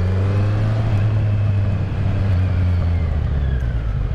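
Kawasaki Z900 inline-four engine running at low road speed through a shortened exhaust, its rear tip removed so only the collector box remains. The pitch rises a little in the first second, then eases slowly down.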